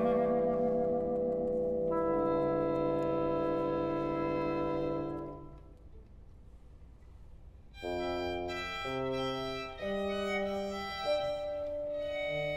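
Small chamber ensemble of violin, clarinet, brass and double bass holding a sustained chord that fades away about five seconds in; after a short near-quiet pause, separate notes enter one after another near the end.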